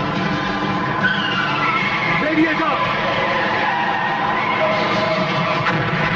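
Film action soundtrack: a speeding vehicle's engine running with squealing tyres, with voices mixed in. Squealing glides stand out between about one and four seconds.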